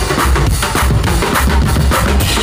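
Live band playing, driven by a drum kit with regular bass-drum and snare strokes over a deep, heavy bass line.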